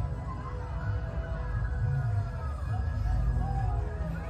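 Parade music playing from a TV's speakers in a room, heavy in the bass, with a melody gliding over it.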